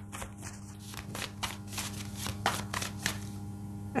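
A deck of tarot cards being shuffled by hand: a run of quick, irregular papery clicks and riffles as the cards are worked to draw a clarifier card.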